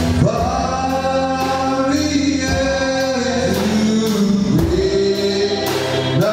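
Gospel song in church: a man sings long held notes into a microphone, backed by other singing voices and instruments over a steady beat.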